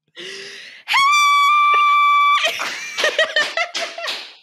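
A woman's mock scream, held loud at a single high, whistle-like pitch for about a second and a half after a short breathy intake, then breaking into laughter.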